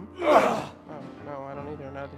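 Male chorus of convicts giving one loud, short unison grunt of labour, about a third of a second in, as a work-gang beat in the chain-gang song. Sustained accompaniment music carries on after it.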